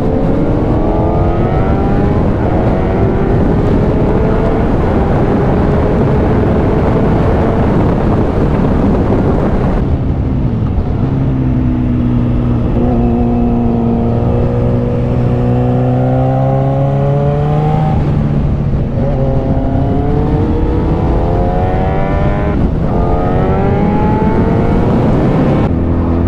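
Onboard sound of a 2010 Yamaha FZ1-N's inline-four engine under way, with heavy wind rush on the microphone. The engine note climbs steadily over the first several seconds. About ten seconds in the wind rush drops away, and the revs then rise and fall gently a few times as the bike accelerates and eases off.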